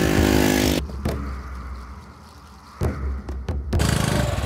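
Small motorbike engine running, loud for the first second and then fading to a low hum. A few sharp knocks come near the end.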